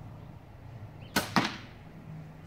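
A shot from a Hoyt CRX 35 compound bow, a sharp crack as the string is released, followed about a fifth of a second later by a second sharp hit, the arrow striking the target.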